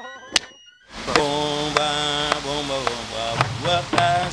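Music: the previous track cuts off with a click and a moment's near-silence, then about a second in a new track starts with a voice singing held notes.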